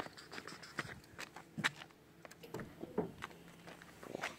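Footsteps at walking pace, a series of short steps roughly two a second.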